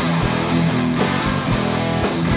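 Live rock band playing, electric guitar to the fore over keyboards, bass and drums, with a cymbal hit about twice a second.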